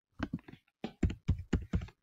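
Computer keyboard keys being typed in a quick run of short clicks, a few at first and then a faster cluster, as a four-digit number is entered.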